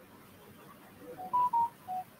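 Electronic chime: a short tune of pure beeps, starting about a second in, that steps up in pitch, peaks with two louder high notes, then falls to a lower note.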